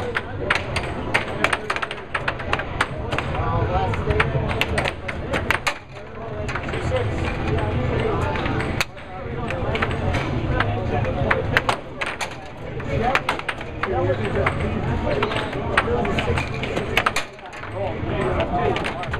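Air hockey puck clacking sharply and rapidly against the mallets and the table's rails in a fast rally, with a few brief lulls, over the steady low hum of the table's air blower.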